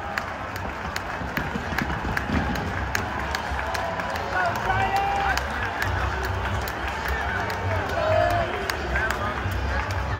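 Large ballpark crowd: a steady din of many voices filling the stands, with a few nearby fans calling out over it.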